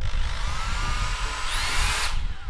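Makita 6950 corded electric impact driver running with no load on its variable-speed trigger. The motor whine rises in pitch as the trigger is squeezed, then climbs sharply to full speed about one and a half seconds in.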